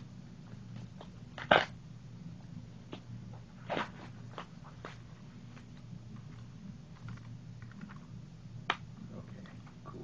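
Plastic wrap and packaging being handled and pulled off a Blu-ray case: crinkling and crackling with a few sharp, louder rustles, the loudest about one and a half seconds in, over a steady low hum.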